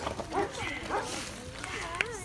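Several people's excited voices over a dog, with the dog's own vocal sounds mixed in.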